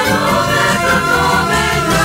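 A church ensemble's Christian music: several voices singing together over instrumental backing, continuous and loud.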